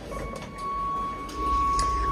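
A steady electronic beep tone, held for about two and a half seconds, in a moving lift. A low rumble comes in about halfway through.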